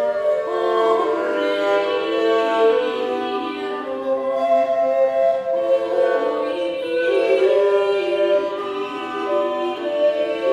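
A medieval song performed by an early-music ensemble: a singing voice with instrumental accompaniment, playing continuously.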